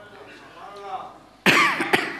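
A person coughing loudly, twice in quick succession, about one and a half seconds in: first a longer cough, then a short one.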